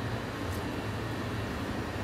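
Steady low background hum with no other events, except a faint click about half a second in.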